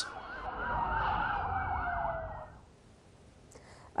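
Emergency vehicle sirens wailing in fast rising-and-falling cycles, with one long tone falling in pitch. They stop about two and a half seconds in.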